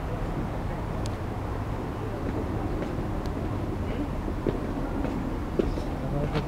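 Diesel multiple unit running in the distance, a steady low rumble as the train moves away down the line.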